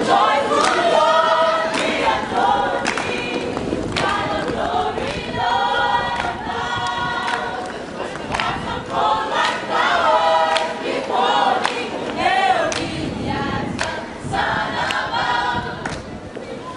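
A gospel group singing together in chorus as a choir, with short sharp hits scattered through the singing.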